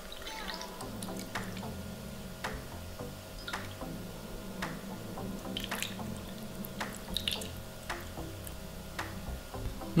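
Strained fish broth trickling and dripping from a metal ladle into a shallow plate. Background music with a soft regular beat about once a second runs underneath.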